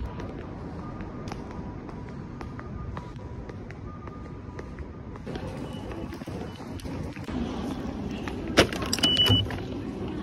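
Station concourse background noise while walking, then near the end a sharp knock and a short high beep from an automatic ticket gate's IC card reader as a card is tapped.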